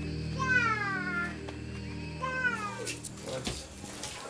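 A cat meowing twice, two drawn-out calls that fall in pitch, over background music with low held notes that fade out about three seconds in.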